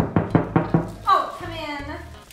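Five quick knocks, as on a wooden door, in the first second, followed by a short drawn-out vocal call from a person.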